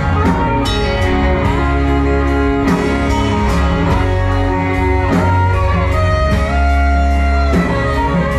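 Live band playing an instrumental passage with no singing: electric guitar, fiddle and electric bass over a steady drum beat.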